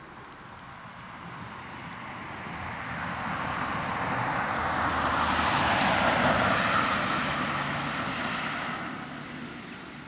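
A vehicle passing by: a rushing noise that swells over several seconds, is loudest about six seconds in, then fades away.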